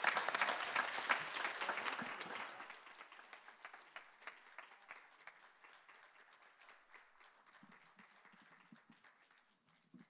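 Audience applauding, loud at first and then thinning and dying away over the following seconds.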